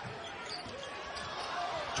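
A basketball being dribbled on a hardwood arena court, its bounces heard over a steady hum of crowd noise in the large hall.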